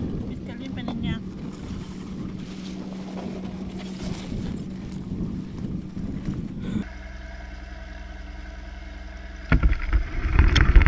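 Wind buffeting the microphone in an open field, with a steady low hum underneath. Shortly before the end come loud, close knocks as a picker grabs the wire handle of a carrier of strawberry flats.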